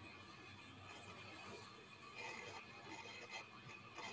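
Near silence: faint background hiss of an online call's audio, with a few faint indistinct sounds from about two seconds in.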